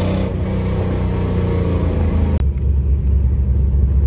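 Car engine heard from inside the cabin, its revs falling gradually for about two seconds, then an abrupt cut to a steady, deeper low rumble.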